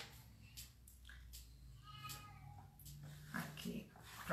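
Soft rustles and light taps of thin Bible pages being leafed through. About halfway through a brief faint pitched call is heard, and near the end a low murmur.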